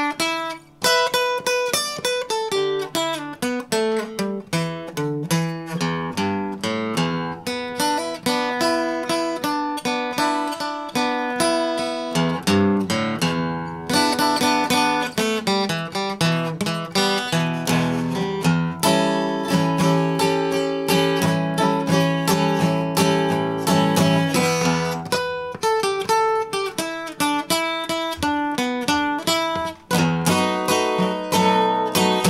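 1960s Harmony H165 all-mahogany acoustic guitar flat-picked, a continuous run of quickly picked notes and chords played up the neck.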